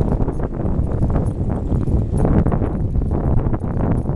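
Wind buffeting a moving camera's microphone, with a constant irregular clatter of rattles and knocks from the camera and its mount jolting over the pavement.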